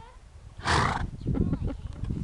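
A pony snorts once, a short loud blast of breath through its nostrils about half a second in, the way a horse clears its nostrils. Hooves crunch on the gravel afterwards.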